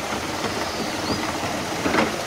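Canal lock filling: water rushing through the top gate paddles and splashing down into the lock chamber, a steady rushing noise.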